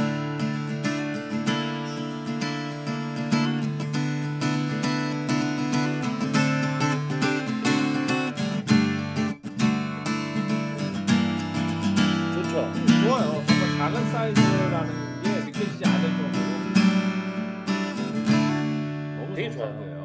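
Yamaha CSF-TA compact acoustic guitar strummed in full chords, played dry with its built-in TransAcoustic reverb and chorus switched off. The strumming is steady and rhythmic, with a brief break about halfway through.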